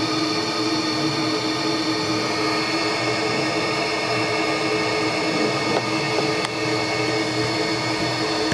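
Electric secondary air-injection pump on a GMC Envoy running steadily with a whirring whine, its outlet tube still connected to the air diverter valve. The technician reads the pump's struggling in this state as a sign that the diverter solenoid is not opening (trouble code P0410).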